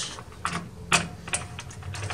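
Key turning in the cylinder of a heavy-line aluminium door lock, giving a series of sharp separate clicks as the lock is worked open and closed, freshly loosened with penetrating lubricant.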